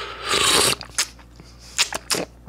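A person slurping a raw oyster off its half shell: one loud sucking rush lasting about half a second, followed by a few short clicks.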